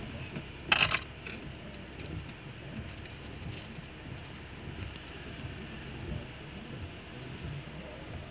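Steady low rumble of a car cabin, with a short, loud burst of noise about a second in and a few faint clicks.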